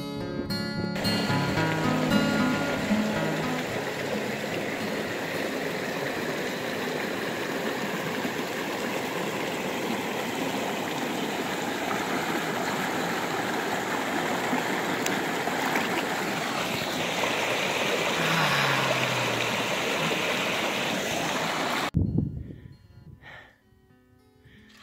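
Shallow rocky mountain stream running, a steady rush of water that starts about a second in as guitar music ends and cuts off suddenly near the end.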